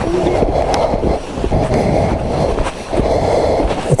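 Ski-Doo snowmobile running along a packed snow trail: engine and track rumble with scattered knocks, mixed with wind buffeting the helmet-mounted microphone.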